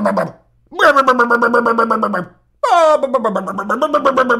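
A man's voice making loud, drawn-out wailing cries in a mocking imitation of avant-garde screaming vocal performance: a short cry ending just after the start, then two long held cries, the last opening with a sharp downward swoop from a high pitch.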